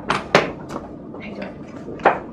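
Handling noise as someone sits down at a table: three sharp knocks in the first second, then softer rustling of papers.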